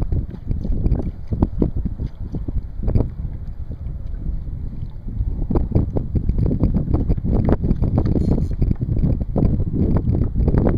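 Wind buffeting the microphone in an uneven low rumble, with small waves slapping and lapping against a plastic kayak's hull.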